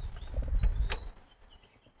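Light metallic clicks and handling noise from the parts of a Richmond Lock Right locker being worked by hand inside a rear differential carrier: a few quick knocks in the first second, then it goes nearly quiet.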